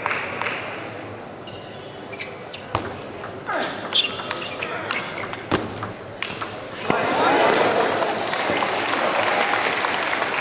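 Table tennis rally: the ball clicks sharply off bats and table, a series of separate ticks for a few seconds. About seven seconds in, spectators' voices rise in a burst of chatter as the point ends.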